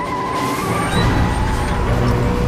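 A bus's engine and tyres rumbling as it drives, swelling louder about half a second in, mixed with trailer music.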